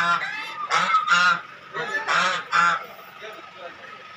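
A series of about six short animal calls, some in quick pairs, that stop about three seconds in.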